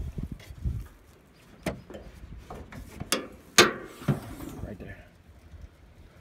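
A few sharp clicks and knocks, the loudest about three and a half seconds in: a Nissan Armada's hood being unlatched and lifted open.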